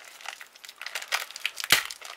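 Foil trading-card booster pack being torn open by hand: irregular crinkling of the wrapper, with one sharp, louder crack near the end as the foil splits.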